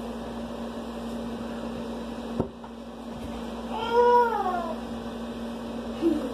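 A cat meows once about four seconds in: a single call that rises and then falls in pitch. It sits over a steady low hum, with a sharp click a little before it.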